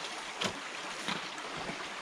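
Shallow creek water running steadily, with one short, sharp knock about half a second in.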